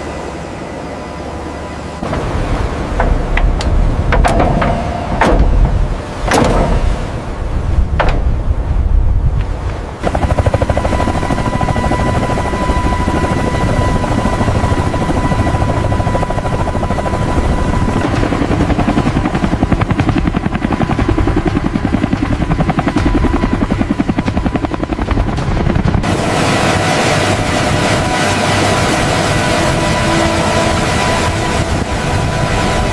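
Heavy helicopter rotor and turbine noise. Several heavy thuds come in the first several seconds, then from about ten seconds in a steady, fast blade chop with a steady whine. The sound grows brighter and hissier near the end.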